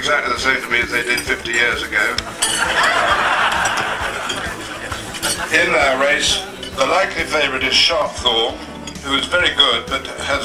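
Clinking of cutlery and crockery over the chatter of a crowd in a marquee. A denser rush of noise comes in about two and a half seconds in and lasts a couple of seconds.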